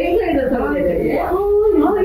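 Women's voices talking, with nothing else standing out.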